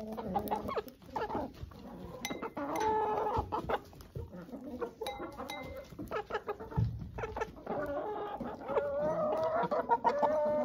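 Several domestic hens clucking, short calls following one another throughout.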